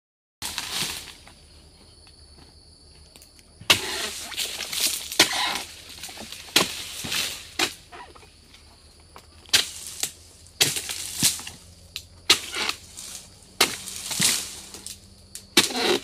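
Oil palm harvesting work: about ten sharp, irregularly spaced rustling crashes and knocks, typical of palm fronds and fruit bunches being cut and falling.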